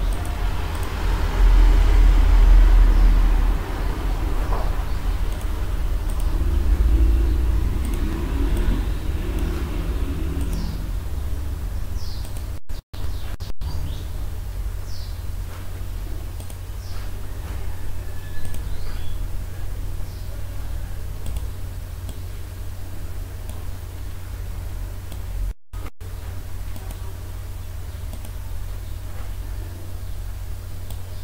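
A steady low hum, with faint, indistinct background sounds over roughly the first ten seconds. The sound cuts out very briefly twice, about halfway through and again near the end.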